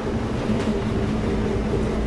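A diesel railcar's engine idling while the train stands, heard inside the passenger car as a steady low drone with a constant hum.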